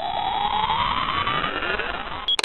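Electronic riser sound effect: a tone climbing steadily in pitch over a bed of hiss.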